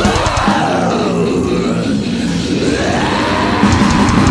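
Death metal recording: the drums drop out at the start, leaving distorted guitars and bass with sliding, bending pitches that rise and fall. The drums come back in near the end.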